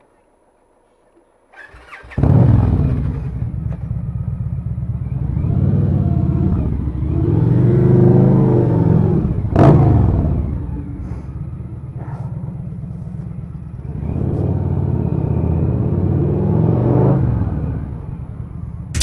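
Motorcycle engine starting about two seconds in, then running and revving up and down as the bike pulls away, with one sharp click near the middle.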